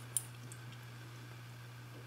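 A light click of a metal key and its split ring as they are turned over in the fingers, once early and faintly again just after, over a steady low hum.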